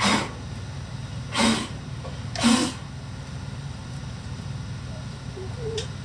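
A person coughing three times in the torch smoke, the coughs about a second apart, over a steady low hum.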